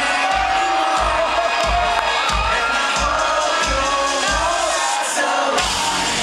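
Live rock band playing through a concert PA, with a steady kick-drum beat about one and a half beats a second, and the audience cheering, recorded from within the crowd. The bass drops out briefly about five seconds in.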